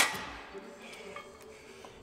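A single sharp metallic clink as a steel cable-machine handle is clipped onto the pulley cable's carabiner, ringing out briefly. It is followed by quiet room tone with a few faint metal ticks.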